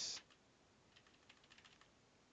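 Faint computer keyboard key clicks, a short run of them about a second in, as keys (Windows+Tab) are pressed to open and cycle through the Windows 7 Flip 3D window switcher.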